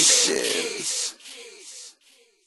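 The tail of the hip-hop background music with its bass cut away, leaving a thin, hissy high end that drops sharply about a second in and fades out to silence by the end.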